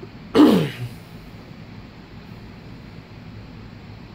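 A man clears his throat once, a short harsh burst falling in pitch, about half a second in, followed by a faint steady background hum.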